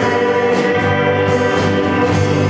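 Live worship rock band playing: electric guitars and a drum kit, with voices singing over them.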